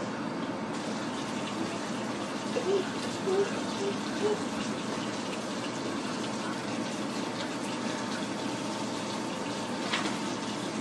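Kitchen faucet running steadily into a stainless steel sink as dishes are washed, with a few brief knocks of cups and dishes a few seconds in and a sharp click at the end.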